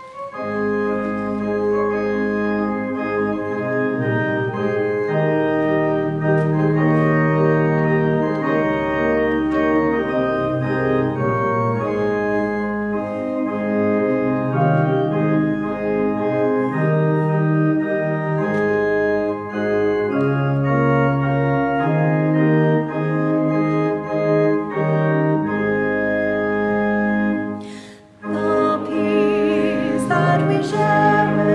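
Organ playing a hymn introduction in sustained chords over moving bass notes. It breaks off briefly near the end, and voices then join in singing with it.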